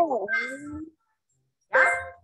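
A drawn-out vocal sound sliding up and down in pitch for just under a second. Then a gap of dead silence, and a woman's short spoken word near the end.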